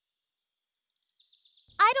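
Near silence, then faint, high bird chirping in the background from about halfway through; a voice starts just before the end.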